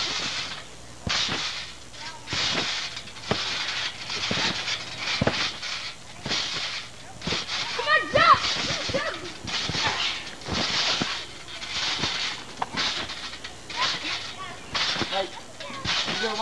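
Backyard trampoline in use: its coil springs creak and the mat thumps with each bounce, in a steady rhythm of about one bounce every three-quarters of a second.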